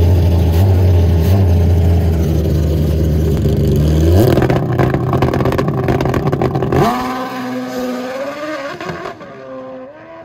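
Drag-racing motorcycle engine held at steady revs on the starting line, then launching about four seconds in with a rising engine note. It pulls away down the strip and grows fainter from about seven seconds in.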